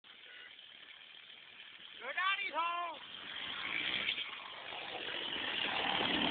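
Trials motorcycle engine running as the bike approaches across grass, growing steadily louder. About two seconds in come two short shouts that rise and fall in pitch.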